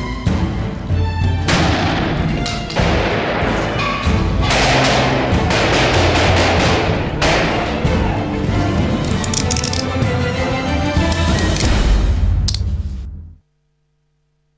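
Loud end-credits music with steady low notes and several sharp crashing hits, fading out quickly near the end and leaving silence.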